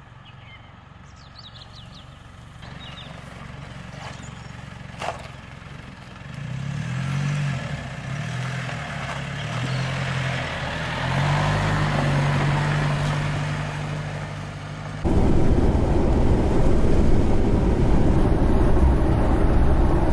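Pickup truck engine running, its pitch rising and falling and then holding steady. About fifteen seconds in it switches abruptly to loud, steady rumble of engine and road noise inside the moving cab.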